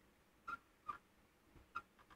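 A quiet room broken by three short, sharp clicks, about half a second, one second and nearly two seconds in.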